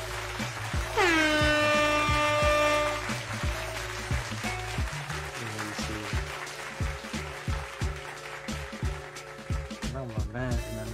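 Intermission music with a repeating bass line. About a second in, a loud horn-like note slides down in pitch and holds for about two seconds.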